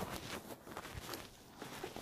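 Faint footsteps with soft rustling and a few light knocks.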